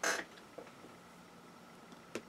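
Cotton t-shirt fabric and kite string being handled while the string is wrapped and tightened: a short hissing rustle right at the start, then a few faint small ticks over quiet room tone.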